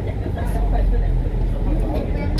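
Steady low rumble of a MAN A95 Euro 6 double-decker bus on the move, heard inside the upper deck, growing a little louder about half a second in. Voices talk faintly over it.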